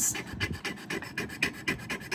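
Metal pendant scraped rapidly back and forth on a black jewelry testing stone, a quick run of rasping scratches. It sounds wrong to the tester, who takes it as a sign the piece may not be precious metal.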